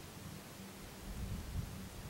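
Quiet outdoor ambience: a low wind rumble on the microphone over a faint hiss, with slight rustling; no call is sounded.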